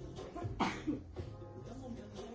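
Soft background music with a short cough from a person about half a second in.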